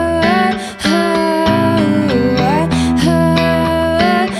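Slow solo song on electric guitar with a woman singing long held notes that glide between pitches; the sound dips briefly a little under a second in.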